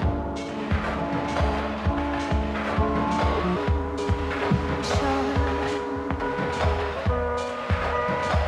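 Electronic music played on pad controllers, a mixer and laptops: a steady kick-drum beat under sustained synth chords that step between notes, over a low bass.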